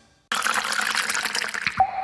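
Logo sound effect of liquid: a bubbling, pouring rush lasting about a second and a half, then a single drop-like plink with a ringing tone that fades away.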